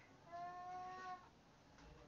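A single drawn-out call with a steady pitch, lasting about a second, from a cat or a person.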